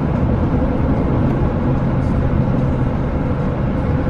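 Steady road and engine noise inside the cabin of a moving car: an even low rumble with a faint hum.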